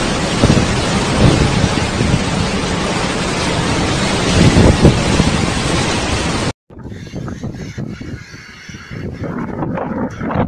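Storm wind with driving rain, a loud steady rush that swells in gusts about a second in and again at four to five seconds. It cuts off suddenly after about six and a half seconds, giving way to quieter, gusty wind buffeting the microphone with scattered knocks.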